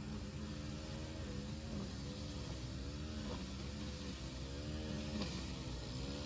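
A motor running steadily in the background, its pitch wavering up and down about once a second.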